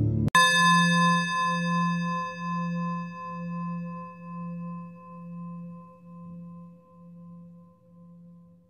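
Soft music cuts off, and right after it a single struck bell-like chime rings out. Its pulsing tone slowly fades away over about eight seconds.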